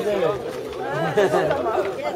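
Several men talking over one another in a crowd, voices overlapping.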